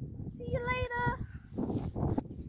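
A girl's voice calling one drawn-out, level "maaa" in imitation of a sheep's bleat, lasting under a second. Wind rumbles on the microphone throughout.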